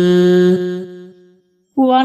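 A voice chanting a Sinhala folk verse (kavi) holds the long last note of a line, which fades away about a second in. After a brief silence the next line begins near the end.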